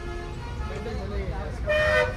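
A vehicle horn toots once, briefly, near the end, over the steady low engine rumble heard from inside a bus cabin in stop-and-go traffic, with faint passenger voices in the background.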